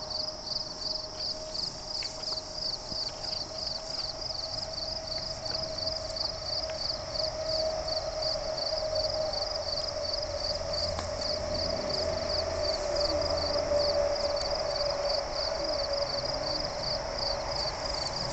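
Insects chirping in a fast, even pulse, about four or five chirps a second, with a steady hum underneath that swells through the middle.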